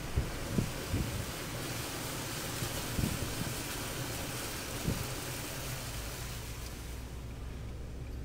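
A vehicle's tyres hissing through standing flood water on a road, with gusty wind on the microphone and a few low thumps in the first five seconds. A steady low engine hum comes in for the last two seconds.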